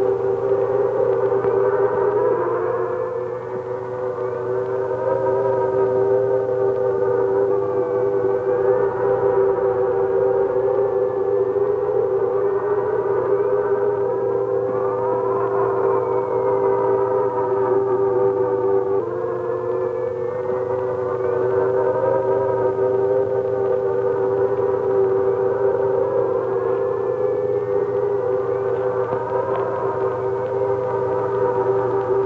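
Eerie electronic film score: sustained droning tones, with thin whistling tones sliding up and down above them every few seconds.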